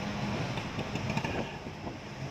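Auto-rickshaw engine running steadily with road and traffic noise, heard from inside the moving rickshaw, with a low drone under the noise.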